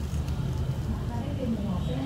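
A steady low hum, with a voice coming in about a second in, its pitch sliding up and down.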